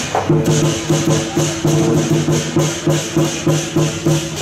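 Temple-procession percussion music playing a fast, steady beat of about four strokes a second, with a low ringing tone that pulses along with the strokes.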